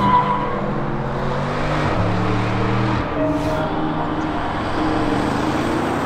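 Audi RS6 Avant (C8) with its twin-turbo V8, driving on the road: an even engine note over road noise, with a short dip in level about three seconds in.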